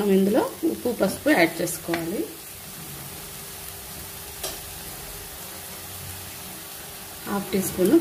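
Potato and onion mixture frying in an earthenware clay pan, scraped and stirred with a metal spatula at first, then left to sizzle with a low, steady hiss.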